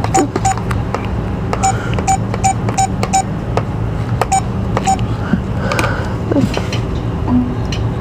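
Checkout keypad beeping: about nine short, same-pitched beeps at uneven intervals as keys are pressed, stopping about five seconds in, over a steady low store hum.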